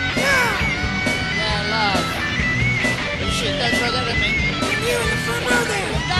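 A rock band playing live and loud: electric guitar with notes bending up and down over drums.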